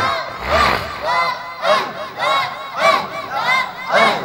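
Many voices chanting together in unison, a short rising-and-falling phrase repeated about twice a second, the devotional chanting of a religious gathering.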